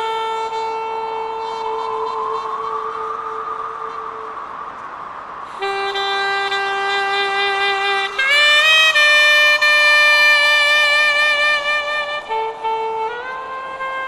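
Funeral music on a reed wind instrument: a slow melody of long held notes that slide up and down into one another, loudest on a high held note in the middle, with a short break before it.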